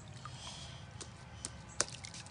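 Faint wet pats and small splashes from hands working wet sand and muddy water, with a few light clicks, the sharpest near the end.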